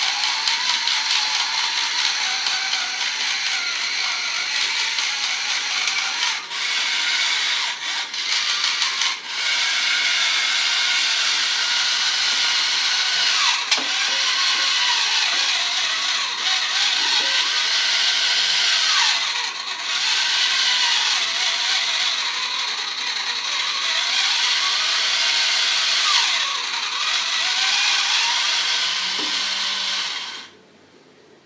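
Small motorised can opener running on a can with a steady mechanical whirr of its gear drive. The pitch wavers and the sound dips briefly a few times. The opener is failing to cut the lid open.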